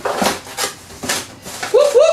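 A package being pulled open by hand, with several short rips and rustles. Near the end a high, rising, voice-like sound begins.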